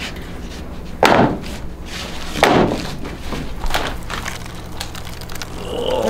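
Mallet knocking the side wall of a resin-pour mould loose from a cured epoxy slab: two loud thumps about a second and a half apart, then a few lighter knocks, over a steady low hum.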